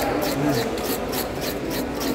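A hand scaler scraping the scales off a whole fish in quick repeated strokes, about three to four rasping scrapes a second.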